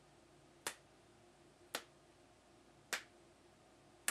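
A person snapping their fingers three times, about a second apart.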